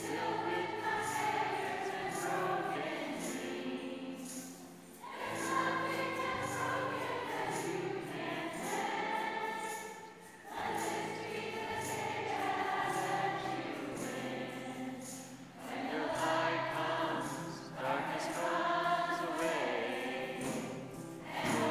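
A large women's choir singing together, in long phrases broken by short pauses about every five seconds.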